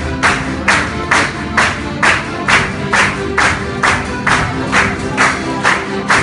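A men's folk group singing with guitars and other plucked strings and an accordion, over a steady beat of sharp percussive strikes, a little over two a second.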